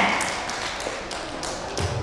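A few scattered hand claps in a reverberant hall, thinning and fading as the applause dies away, with a low thud near the end.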